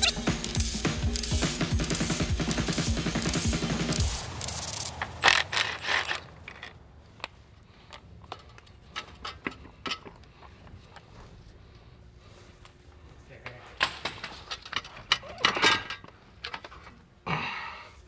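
Cordless Milwaukee impact wrench hammering for about four seconds, breaking loose the 19 mm bolts of a BMW E46's dual-mass flywheel. Then scattered metallic clinks and clanks of loose bolts and tools being handled, with a louder clatter near the end.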